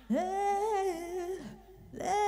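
Female vocalist singing a long held, wordless note with no band behind her. The note breaks off about a second and a half in, and the next one begins right at the end.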